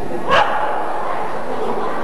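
A single short, sharp shout from a wushu performer about a third of a second in, over a steady murmur of arena noise.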